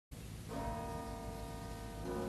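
Tower bells ringing: a struck chord of bell tones about half a second in that rings on steadily, and a fresh strike right at the end.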